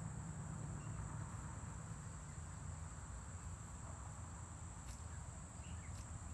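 Faint, steady high-pitched chirring of crickets, over a low, even rumble.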